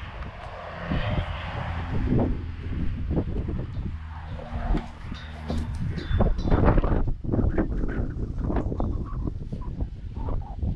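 Footsteps of someone walking over dirt and onto concrete, mixed with wind rumbling on the microphone.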